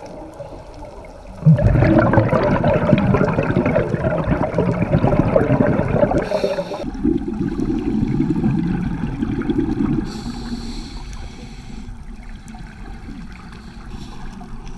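Scuba regulator breathing heard underwater: a loud gurgling rush of exhaled bubbles starts suddenly about a second and a half in and lasts about five seconds. Then comes a short hiss of the next breath, quieter bubbling, and another brief hiss near the end.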